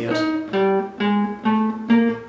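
Classical guitar playing single plucked notes, about two a second, each left to ring. This is a slow chromatic 1-2-3-4 finger exercise ascending the neck one finger per fret.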